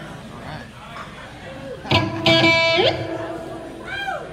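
Amplified electric guitar: a chord struck about halfway in rings for about a second, then ends in a short slide upward in pitch.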